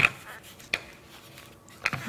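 Hollow plastic rolling pin, filled with ice water, rolling pie dough thin on a pastry mat, with a few light knocks about a second apart.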